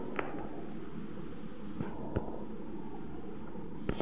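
Steady background noise of a room with no voices, broken by a few small clicks and knocks.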